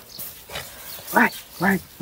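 Mostly speech: a woman's voice saying short repeated syllables, starting a little over a second in.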